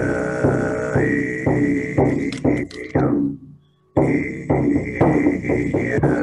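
Throat chanting: a low, sustained vocal drone with a high, whistle-like overtone that dips and rises again, pulsed in short rhythmic accents. It breaks off for a breath about three seconds in, then resumes.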